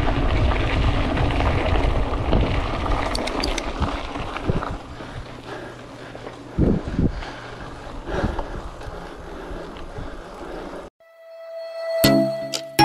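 Wind rushing over the microphone of a camera mounted on a moving mountain bike, mixed with tyre and road noise. It is loudest in the first few seconds, then eases, with a few short knocks from the bike. It cuts out near the end, and music begins.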